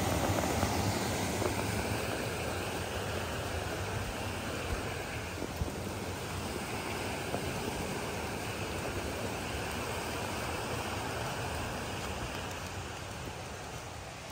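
Creek water rushing over a small cascade formed by a fallen log and piled deadfall: a steady, even rush that grows gradually fainter as it falls behind.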